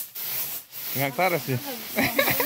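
Rice grains sliding and rubbing in round woven bamboo winnowing trays as the trays are shaken, a steady hiss with a couple of short breaks between strokes.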